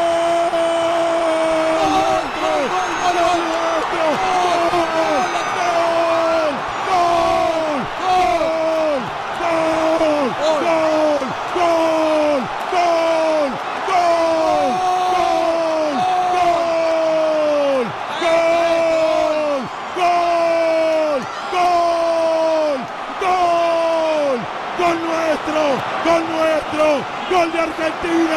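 A male radio football commentator shouting "gol" over and over. Each cry is held for about a second and drops in pitch at its end, repeating roughly every one and a half seconds: the goal call for a goal just scored.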